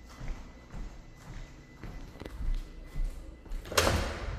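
Footsteps on a vinyl plank floor as someone walks across a room, a soft knock with each step, then one louder knock near the end.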